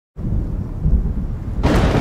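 Thunder rumbling low, then a sudden crack of lightning striking a tree near the end, running on as a loud, hissing crackle.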